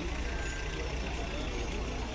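Mercedes-Benz Citaro city bus idling at the stop, a steady low engine rumble.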